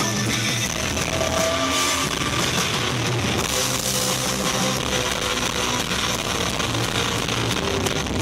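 Live rock band playing through a club PA: electric guitars, bass guitar and drum kit, loud and without a break.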